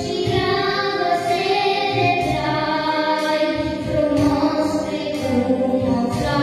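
A young girl singing a song into a microphone over instrumental accompaniment, in long held notes that move from pitch to pitch.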